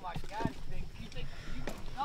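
A faint voice talking, with a few light clicks and knocks of handling.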